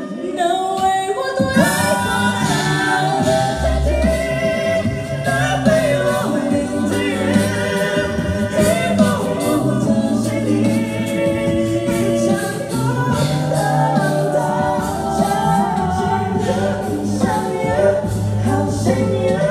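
A five-voice a cappella group sings live through microphones and a PA: close vocal harmonies over a sung bass line holding long low notes, with no instruments.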